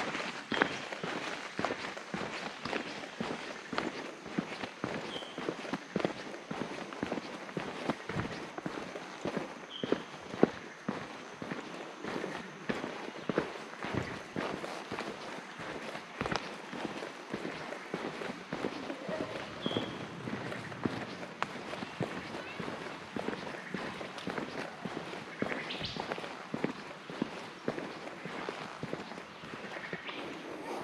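Footsteps of a hiker walking along a dirt forest trail: an uneven, continuous run of steps with small knocks and rustles.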